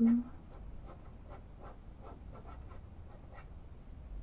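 A pen sketching on paper in short, quick strokes, a few each second, drawing a figure's hair.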